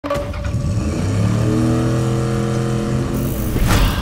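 A car engine running, its pitch drifting slightly up and down, then a short loud whoosh near the end.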